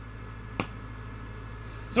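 Room tone with a steady low hum, broken by a single sharp click a little over half a second in.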